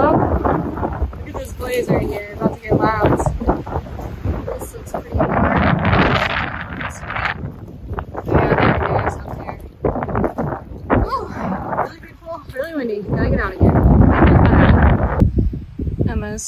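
Strong gusty wind buffeting the microphone, coming in loud surges of rumbling noise.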